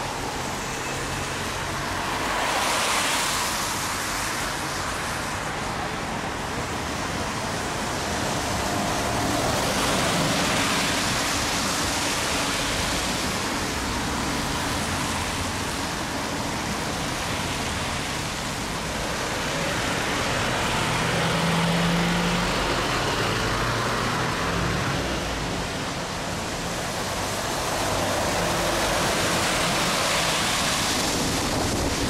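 Road traffic noise: a steady rush of tyres and engines that swells as vehicles pass, about four times.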